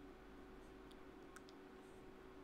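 Near silence: faint room tone with two or three faint clicks about halfway through.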